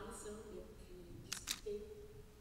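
A voice speaking through the hall's microphones, apparently in Vaudois patois. Two sharp clicks come close together about a second and a half in.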